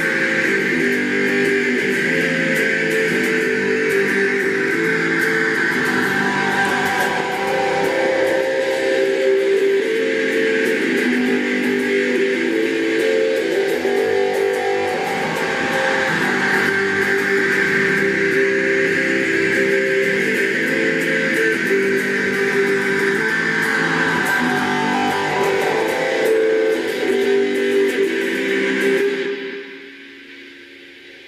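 Stratocaster-style electric guitar strummed in steady, repeated chords: the song's closing instrumental passage, which stops about a second before the end.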